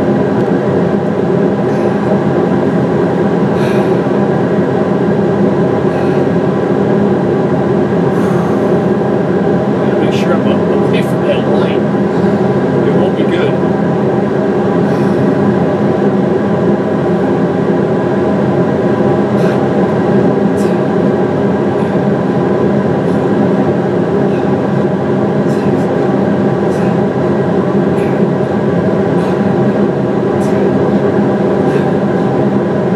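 A recording of two industrial fans played back as background white noise: a steady, dense whir with several constant hum tones, unchanging throughout. A few faint short ticks sit over it.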